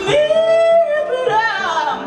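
A woman singing live with her own acoustic guitar: a high note held for nearly a second, then a run of notes sliding down, over the guitar's chords.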